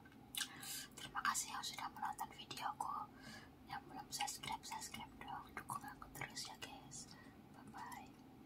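Close-miked mouth sounds of chewing: a quick run of wet smacks and clicks, several a second.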